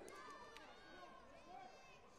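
Faint voices calling out, with one short knock about half a second in.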